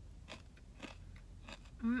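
Crispy bacon being chewed close to the microphone, with a few soft crunches. Near the end a hummed "mm" of enjoyment begins.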